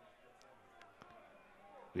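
Near silence: a faint background hiss with a couple of faint clicks.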